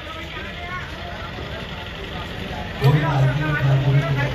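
Chatter of people in a busy street, with a louder, low-pitched voice starting close by about three seconds in.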